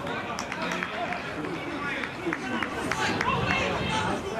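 Players shouting and calling to each other on an open football pitch during play, with a few short sharp knocks among the voices.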